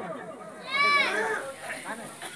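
A child's short high-pitched call, rising and falling once about a second in, over faint chatter from a seated crowd.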